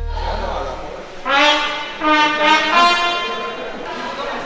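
Trumpet playing a short phrase of about four held notes, coming in just over a second in, with voices murmuring in the background.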